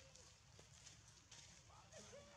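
Near silence, with a few faint, short voiced sounds at the start and near the end and a single light tick about half a second in.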